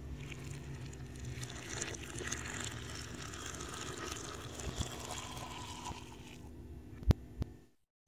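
Faint, steady gurgling of just-poured hot water steeping over ground green coffee in a cup, with two sharp clicks about seven seconds in.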